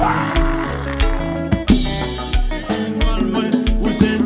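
Haitian kompa band playing an instrumental passage, with a bass line, pitched instruments and a steady drum-kit beat, opening with a crash.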